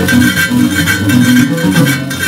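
A West African gourd harp-lute (ngoni) plucked in a quick, repeating low melody, its notes changing several times a second.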